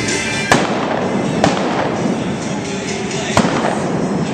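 Three sharp shots from a single-action revolver firing black-powder blanks at balloon targets, the second about a second after the first and the third about two seconds later, over steady background music.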